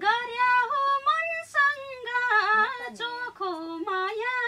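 A woman singing a Nepali dohori folk-song verse unaccompanied, her high voice gliding and ornamented in several short phrases.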